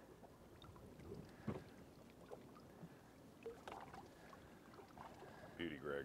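Faint water lapping against a small boat's hull, with a few small splashes and knocks.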